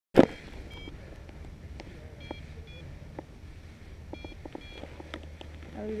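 A sharp knock at the very start, then short electronic beeps, mostly in pairs, with scattered clicks over a low steady hum.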